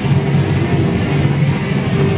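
A punk rock band playing live and loud, with electric guitar, bass and drum kit.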